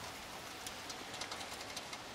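Light scattered clicks and taps of a PC case's metal top vent cover being lifted off and handled, over a steady background hiss.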